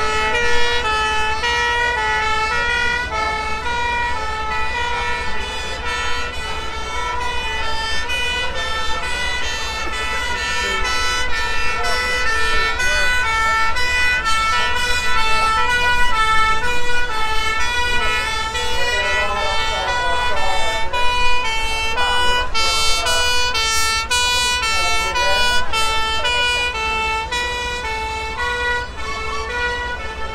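A fire engine's two-tone siren sounding continuously, stepping back and forth between a high and a low note, over a low steady engine rumble.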